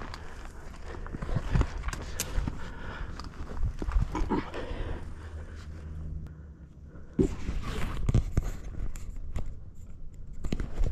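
Footsteps over rocky ground with dry scrub brushing and rustling against clothing and gear: irregular crunches and knocks, easing off briefly in the middle, then picking up again.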